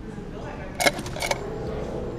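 Push bar of a glass exit door being pressed: a sharp metallic clack a little under a second in, then a few quicker clicks.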